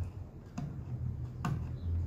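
A sharp click about one and a half seconds in, with a few fainter small clicks before it, as a screwdriver works the screw terminal of a small solar charge controller to fasten the pump's positive wire, over a low steady hum.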